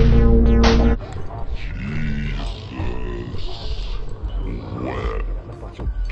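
Loud droning intro music cuts off suddenly about a second in. A deep voice follows with a few short growls and grunts over a faint eerie background.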